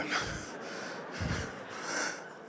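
Soft laughter and murmur from the congregation in a large hall during a pause after a joke, with a breath close to the microphone about a second in.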